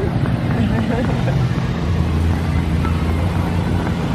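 Steady low rumble of road traffic from a busy street, with wind buffeting the microphone.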